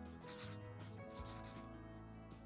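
Quiet background music with two soft, scratchy swishes about a second apart, a brush-stroke sound effect laid over an animated title card.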